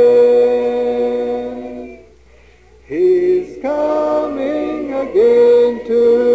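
A cappella choir singing a hymn in harmony. A long held chord closes the refrain and fades out about two seconds in, then after a short pause the voices come back in together to begin the next verse.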